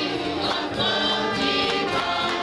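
Gospel song sung in harmony by a man and two women into handheld microphones, the voices held on long notes.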